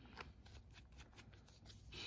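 Near silence with faint light ticks and rustles of hands handling paper and a plastic glue bottle.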